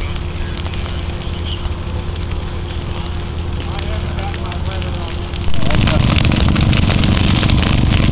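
Dry prairie grass burning along a low fire line: a steady, rumbling fire noise. About five and a half seconds in it jumps suddenly louder, with many sharp crackles.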